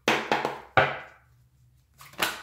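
A deck of tarot cards being shuffled by hand: two quick bursts of cards slapping and riffling together, less than a second apart.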